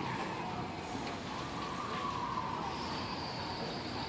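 Emergency-vehicle siren wailing, its pitch sliding slowly down twice over a steady background noise, with a higher thin tone coming in near the end.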